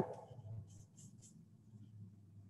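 Faint paintbrush strokes on canvas, a few quick scratchy strokes about a second in, while grass blades are painted.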